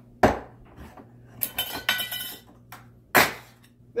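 Sharp metallic clinks and clatter of a steel food can and its cut-off lid being worked free and handled: a sharp click about a quarter second in, a run of ringing clinks around the middle, and another loud clatter a little after three seconds.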